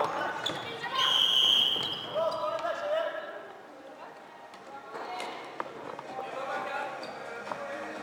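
Floorball referee's whistle blown once, a steady high note lasting about a second, about a second in, stopping play. Around it, players' short shouts and the sharp clicks of sticks and ball on the indoor court.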